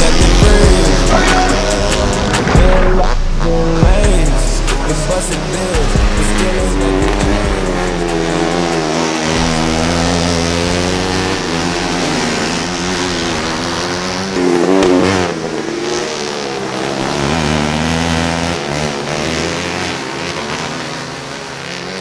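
Outlaw dirt kart engine running hard on track, its pitch rising and falling as it revs up and down through the corners. Background music with a heavy bass line plays under it for about the first nine seconds.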